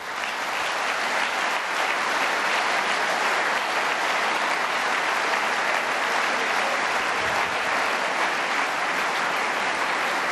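A large audience applauding, swelling in over the first second and then holding steady.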